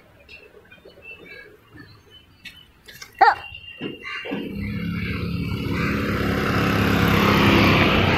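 A single short, sharp call with a bending pitch about three seconds in, then a motor vehicle's engine running steadily and growing louder as it approaches.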